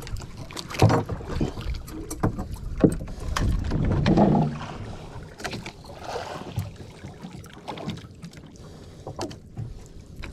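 Small outrigger boat at sea: water against the hull and wind on the microphone, with scattered knocks and rubbing as fishing line is handled at the gunwale. A louder burst of noise comes about four seconds in.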